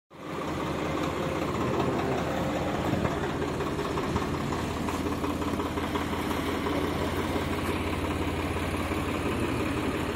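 Swaraj 855 tractor's three-cylinder diesel engine running steadily at low revs, an even low hum with light diesel clatter.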